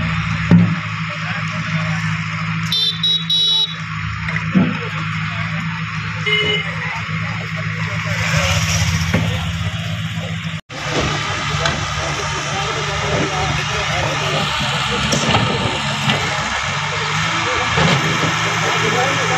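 A vehicle engine running steadily amid street noise, with a short horn toot about three seconds in and a brief beep about six seconds in.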